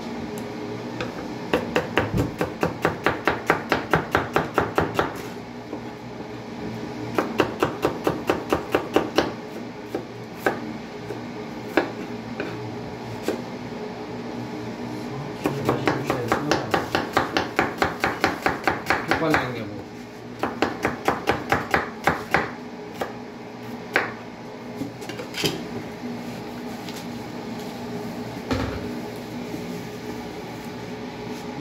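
A kitchen knife slicing onions on a wooden cutting board: quick runs of knife strokes against the board, about four or five a second, in several bursts of a few seconds, with single knocks in between.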